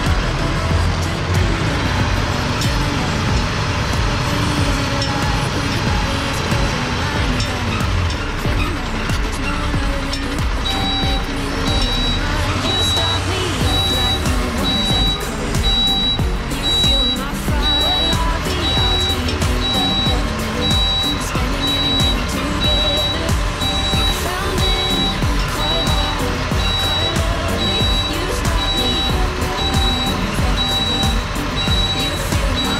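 Lorry's reversing alarm beeping at a steady, even rate from about a third of the way in, over the running diesel engine of the car transporter as it backs up slowly. Background music plays throughout.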